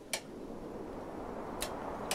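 Two clicks of a small wall lamp's switch being worked by hand, about a second and a half apart, the first louder, over a faint room hiss.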